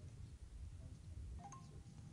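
Quiet room tone with a steady low hum and a few faint, brief tones near the end.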